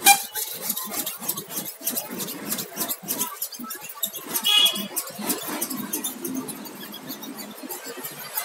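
A new cutter (utility-knife) blade scraping charcoal-like residue off the glass of an LCD panel in quick, repeated strokes. There is a short high squeak about four and a half seconds in.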